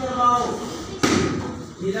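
A bare-foot kick striking a handheld taekwondo kick paddle with one sharp slap about a second in, after a short voice call near the start.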